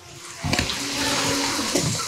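Heavy tropical rain pouring down, a dense steady hiss that swells up about half a second in.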